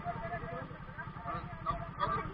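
Voices of several people talking at a little distance, over a motorcycle engine idling with a steady low, even pulse.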